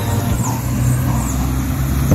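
A motor vehicle's engine running, a low steady hum that grows stronger about half a second in.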